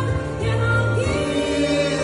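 Two men singing a duet into microphones over amplified instrumental accompaniment, holding long notes over a steady bass line.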